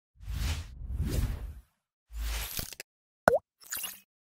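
Logo-animation sound effects: noisy swells that rise and fade, then a short, sharp pop with a quick pitch dip about three and a quarter seconds in, and a brief shimmer just after.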